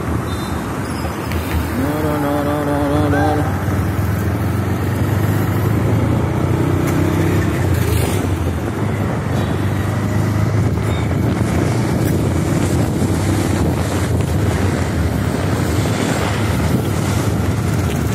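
Steady engine and road noise from a vehicle riding along a city street, with wind buffeting the microphone. A horn sounds for about a second and a half, around two seconds in.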